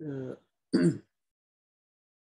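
A man clearing his throat: a short voiced hum, then about half a second later a louder, harsher clearing.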